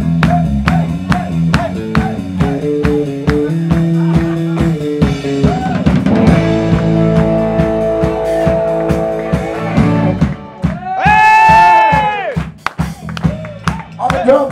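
Electric bass guitar solo: a run of low notes over a steady drum beat, with held chords above from about halfway. Near the end the drums stop and a loud held note wavers in pitch.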